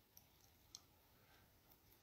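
Near silence: quiet room tone with two faint clicks, one just after the start and a slightly louder one under a second in.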